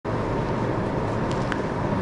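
Steady rushing background noise with a faint low hum underneath, unchanging throughout.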